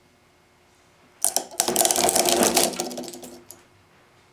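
A pair of 3D-printed plastic bevel gears being driven to failure under rising torque, the teeth stripping and shattering in a burst of rapid cracking and clattering. It starts about a second in and dies away over about two seconds, with one last click near the end.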